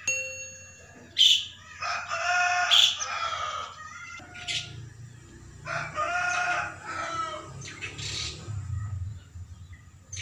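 A rooster crowing twice, each crow lasting about one and a half to two seconds, with short bird chirps in between. A short electronic chime sounds at the very start.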